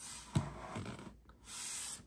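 Handling of a USB cable and device at the charger: a sharp click about a third of a second in, then a short hissing rush near the end.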